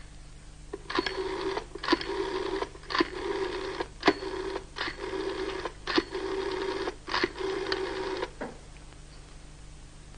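Rotary telephone dial being turned and spinning back about seven times in a row, a number being dialled. Each return is a click followed by a short whirr of under a second.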